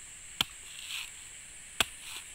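Knife chopping into the fibrous husk of a mature coconut: two sharp strikes about a second and a half apart.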